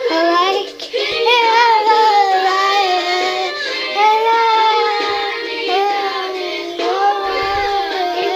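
A young girl singing, drawing out long wavering notes that slide between pitches, with short breaks between phrases.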